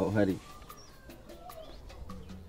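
Faint bird calls in the outdoor background, a few short chirps and glides, after a man's phone talk breaks off about half a second in.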